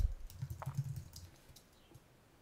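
Computer keyboard typing: a quick run of key clicks that dies away about halfway through.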